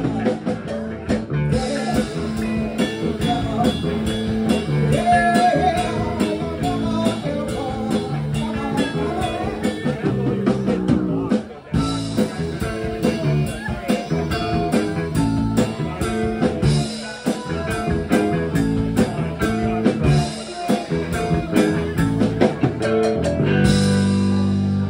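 Live blues-rock band playing: electric guitars over a drum kit, with a short break in the playing about halfway through.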